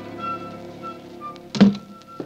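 Orchestral bridge music in an old radio drama, thinning out to a few held notes, then cut off by a single loud thud about one and a half seconds in.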